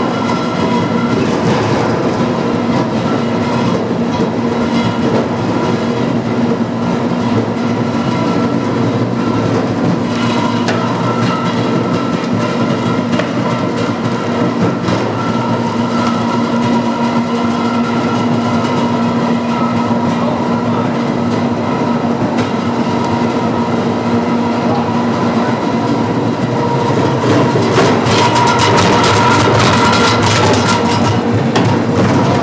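A Vincent pulp fluidizer, driven by a 20-horsepower motor, running loud and steady with a rattling churn as it grinds fruit pulp. Its steady hum's lowest tone drops away about 25 seconds in, and the clatter grows louder near the end.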